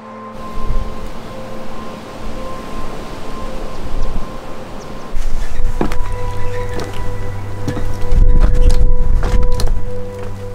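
A steady, low background music drone with a low rumble under it. From about six seconds in come sharp knocks and creaks of footsteps on old, loose wooden floorboards, loudest near the end.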